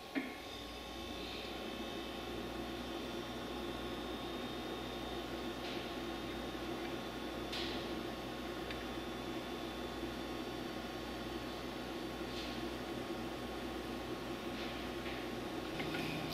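Steady background hum with a few faint fixed whining tones, like a fan or electrical equipment running in a small room, with a click at the very start and a few faint, short soft hisses.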